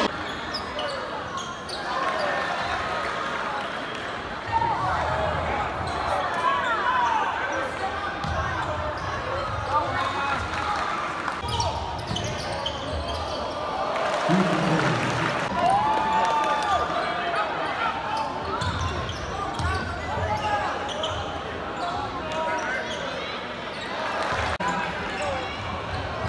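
Basketball being dribbled on a hardwood court, with short shoe squeaks, under a steady murmur of crowd chatter echoing in a large arena.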